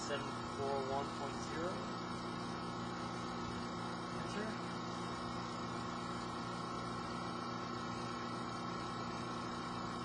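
A steady machinery hum made of several held tones, running evenly without change.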